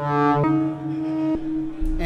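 Buchla Music Easel synthesizer playing a three-operator FM patch, the AUX Oscillator card's digital oscillator modulating the modulation oscillator, which in turn modulates the complex oscillator. A steady low drone holds under a bright, timbrally rich note that starts at once, loses its upper brightness about half a second in, and shifts again about a second and a half in.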